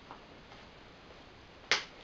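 Faint handling of a plastic food container, then one sharp snap about 1.7 s in as the Tupperware lid pops off.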